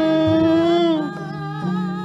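Javanese gamelan music with a vocalist holding one long note of a sung verse; the note wavers and ends about halfway, and a lower held tone follows.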